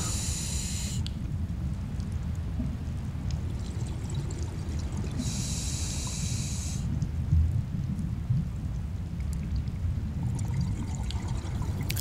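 Scuba diver breathing through a regulator underwater: two hissing in-breaths about five seconds apart, over a steady low rumble of water against the camera.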